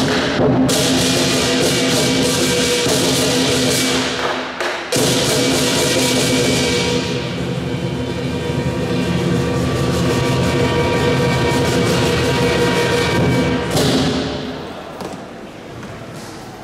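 Lion dance percussion band of large Chinese drum, cymbals and gong playing loudly, the cymbals and gong ringing on over the drum beats. It breaks off briefly about five seconds in, then resumes and dies away near the end.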